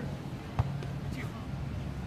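A single sharp smack of a hand on a beach volleyball about half a second in, during a rally, over a low steady rumble and faint distant voices.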